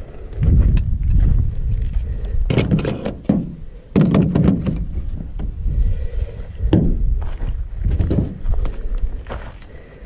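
Tools and a bottle being put away in a plastic tool case: a string of irregular clunks, knocks and clicks, with footsteps on gravel and a steady low rumble underneath.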